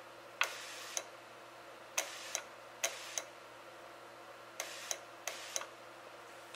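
Automotive fuel injector on a pressurized bench tester pulsed five times from a momentary switch. Each pulse is a sharp click as the injector opens, a short faint hiss as the fuel sprays from the nozzle, and a second click as it shuts, a fraction of a second later.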